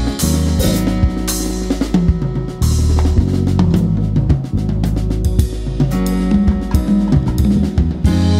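Live smooth-jazz band playing: drum kit with snare, bass drum and cymbals prominent, over an electric bass line and keyboards.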